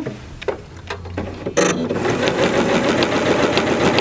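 Janome sewing machine with an integrated walking foot, starting about a second and a half in and then stitching steadily through a quilt sandwich of batting between two layers of cloth.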